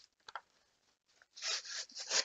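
Cardboard backing of a Pokémon TCG blister pack being peeled off: a small click, then a brief ripping, rasping tear about halfway through.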